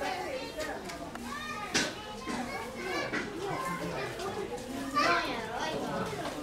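Zoo visitors' voices: a crowd talking over one another, with children calling out. There is a short sharp knock about two seconds in, and a loud, high child's shout about five seconds in.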